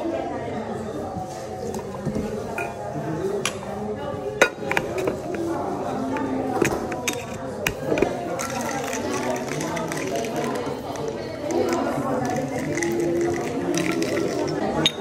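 Background voices of people talking, with several sharp metallic clinks from a stainless steel cocktail shaker and jigger being handled.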